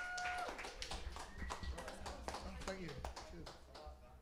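Small audience clapping and calling out, just after the song's last held note ends about half a second in; the clapping thins and fades toward the end.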